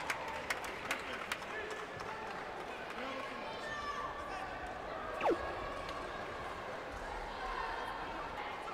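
Echoing sports-hall ambience: a murmur of distant voices and crowd chatter, with a few sharp knocks early on and a short downward-sliding tone about five seconds in.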